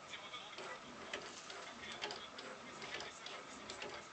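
Bang & Olufsen Beosound 9000 CD changer's disc carriage travelling sideways along its row of discs after a button press, with a run of light irregular clicks and ticks from the mechanism.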